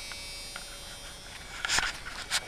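A faint steady electrical buzz, with a brief rustle near the end as the handheld camera is moved.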